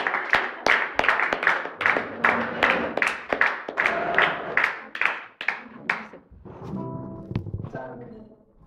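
A small audience clapping, the sharp individual claps thinning out and stopping about six seconds in. A few quieter sustained pitched notes follow near the end.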